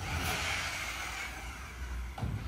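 Steady low hum with a faint hiss: workshop room tone.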